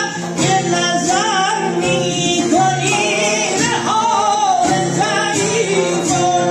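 Male voice singing Persian classical avaz in the karashmeh rhythmic form, with wavering, ornamented melismas. Kamancheh, a plucked long-necked lute and a dayereh frame drum accompany him.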